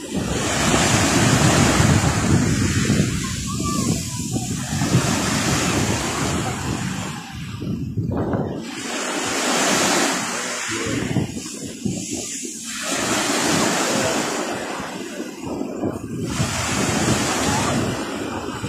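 Small sea waves breaking and washing up a fine-pebble shore, the surf swelling and ebbing about every four seconds.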